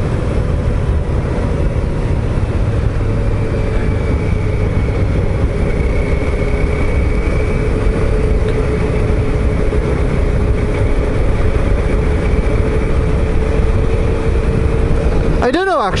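Suzuki SV650S V-twin motorcycle engine running at a steady cruise, with heavy wind rush on the microphone. The engine note holds steady.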